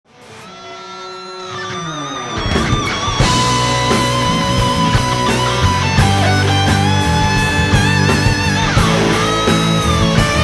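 Instrumental rock music led by an electric guitar. It opens with a held note that swells in and slides down in pitch, then drums and bass come in at about two and a half seconds. Over them the lead guitar plays long sustained notes with vibrato and bends.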